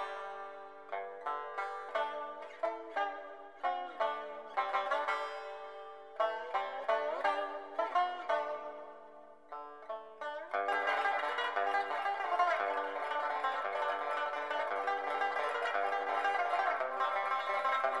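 Background music on a plucked string instrument: a melody of separate plucked notes, some sliding in pitch, which about ten seconds in turns into a dense, continuous shimmer of sustained notes.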